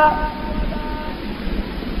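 The tail of a man's long, held recited note, an elongated vowel of Quran recitation through a microphone, fading out about a second in. It is followed by a pause filled with steady hiss and low hum from the recording.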